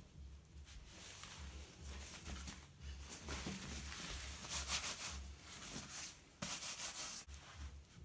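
Fabric rustling and rubbing as a large sheet of white cloth is handled close to the microphone, coming in uneven swells with a louder rustle about six and a half seconds in.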